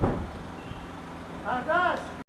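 A low, steady engine hum with even pulses in the background, typical of a motor idling. There is a short thump at the very start and a brief voice near the end.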